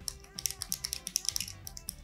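A small plastic fidget cube being fiddled with: its buttons and switch click in a fast, uneven run of small clicks, about ten a second.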